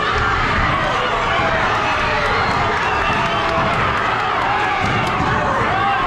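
Boxing crowd shouting and cheering, many voices overlapping at a steady loud level.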